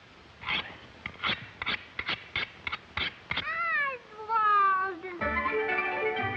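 Early-1930s cartoon sound effects: about ten sharp clicks in an uneven run, then two wavering, animal-like cries that slide up and down in pitch. From about five seconds in, a short burst of orchestral music plays.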